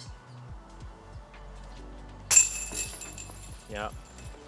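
A thrown disc strikes the metal chains of a disc golf basket about two seconds in: a sudden clash of chains with a high, ringing metallic tail that fades over about a second.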